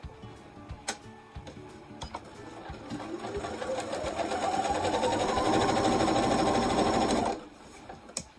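Electric sewing machine stitching a chenille strip onto a quilt seam. It starts about three seconds in with a rising whine as it speeds up, runs fast and steady, then stops abruptly near the end. A few light clicks come before it, from the fabric being handled.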